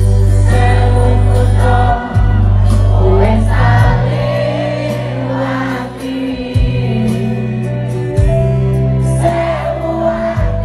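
Live band playing a Javanese pop song with a male lead singer on a microphone and the crowd singing along, recorded from the audience. Loud, sustained bass notes change every couple of seconds under the voices.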